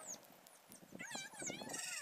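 Open fire roasting cashew nuts in their shells, with scattered crackling pops. Through it run many quick, high chirps that fall in pitch, thickening into a fast trill near the end.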